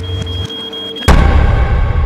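Cartoon soundtrack played backwards: a steady high beep tone over a low hum, then about a second in a sudden loud burst of reversed sound that slowly fades away.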